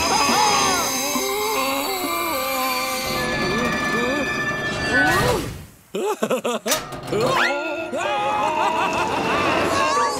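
Cartoon background music with characters' wordless cries and exclamations over it. The sound drops away sharply about six seconds in, then returns in short choppy bits before the music resumes.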